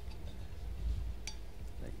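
Corkscrew being turned into the cork of a wine bottle: faint small ticks and creaks over a low rumble, with one sharp click about a second and a quarter in.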